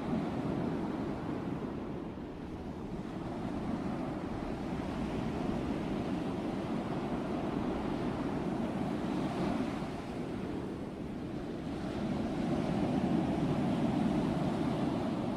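Sea waves breaking and washing onto the beach: a steady surf that swells and eases a little, rising again near the end.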